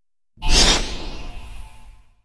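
A whoosh sound effect with a low rumble under it, starting sharply about half a second in and fading away over about a second and a half.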